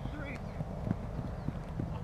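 Outdoor field ambience: a steady low rumble with a few dull thumps, and faint shouting voices of players far across the field.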